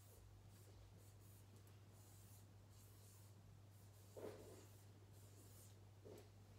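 Faint squeaks and scratches of a dry-wipe marker writing letters on a whiteboard, over a steady low hum. A brief, slightly louder low sound comes about four seconds in.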